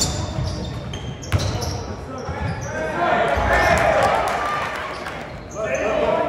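A basketball bouncing on a hardwood gym floor in repeated sharp thuds during play, over crowd voices echoing in the gym. The crowd noise swells about halfway through.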